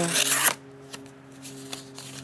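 Kershaw Compound's plain-edge blade slicing through a sheet of paper in one quick cut, a brief rasp in the first half second; the clean cut is the sign of a sharp edge. A steady low hum runs underneath.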